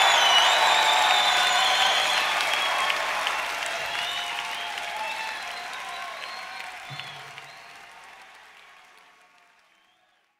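Live rock-concert audience applauding after a song ends, the applause fading out steadily to near silence by the end.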